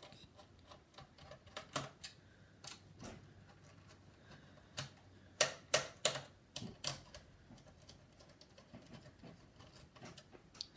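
Precision screwdriver working the screws of a laptop CPU heatsink loose: irregular small metallic clicks and ticks, with a run of louder clicks about five to seven seconds in.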